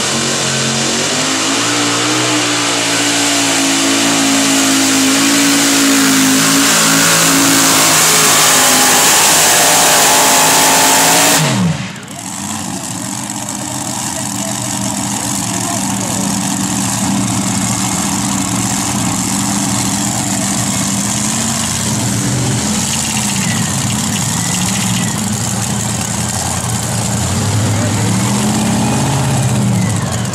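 Supercharged multi-engine modified pulling tractor at full throttle under load, a loud, dense engine note for about the first eleven seconds. It then drops off sharply with a falling pitch as the throttle is cut. The engines run on more quietly after that, the pitch rising and falling with throttle blips.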